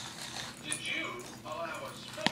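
A baby vocalizing: a couple of short, high-pitched coos.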